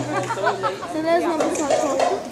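Several people's voices talking and calling out over one another in a large hall, as the drum-backed music stops within the first second.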